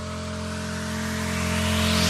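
Electronic background music building up: a held synth chord under a rising noise sweep that grows steadily louder and brighter.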